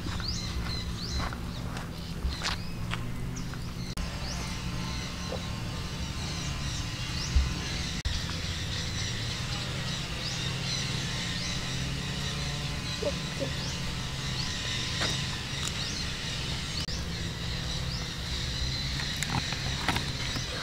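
Outdoor ambience of birds chirping again and again in short rising notes over a steady low hum, with one sharp knock about seven seconds in.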